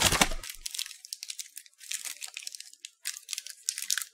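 Mini KitKat wrappers crinkling and rustling as they are handled and sorted by hand. The crinkling comes in three spells and is loudest at the start.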